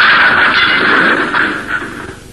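Cartoon sound effect of a barrage of thrown saucers: a loud, sustained rushing noise that fades out near the end.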